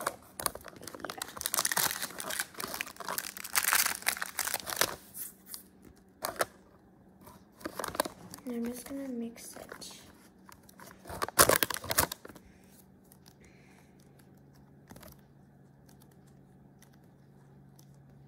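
Foil-lined clay wrapper crinkling and tearing as a pouch of Model Magic is opened and handled, in dense bursts through the first five seconds and again briefly about eleven seconds in. After that it goes quiet, leaving a low steady hum.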